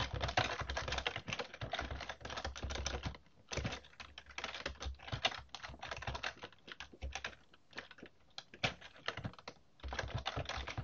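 Typing on a computer keyboard: quick runs of key clicks with a couple of brief pauses, one about a third of the way in and one near the end.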